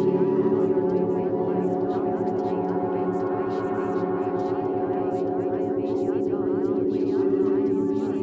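Subliminal meditation track: a drone of sustained, ringing tones set to the 432 Hz frequency, with layered spoken affirmations mixed in quietly underneath and a fast even pulse in the bass.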